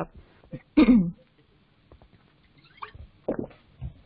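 A woman's brief throat noises between sentences: one short voiced sound with a falling pitch about a second in, then a few faint clicks and small throat sounds near the end.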